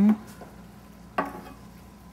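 Wooden spoons stirring rice in pans, with one short knock against a pan just over a second in.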